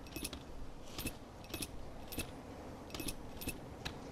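Light metallic jingling: about seven short clinks at uneven intervals, each with a bright ringing edge, over a steady background hiss.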